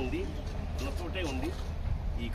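A man speaking in short phrases to a small group, over a steady low rumble.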